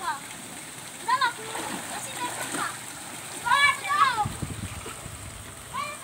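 Splashing and running water in a shallow, muddy stream where boys are wading and working a tarp, with children's high-pitched calls breaking in three times.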